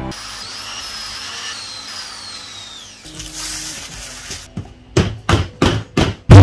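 Aluminium tubes being pushed and worked into a 3D-printed plastic radiator tank by hand: a scraping rub with thin squeaks, then a run of about four sharp knocks in the last second.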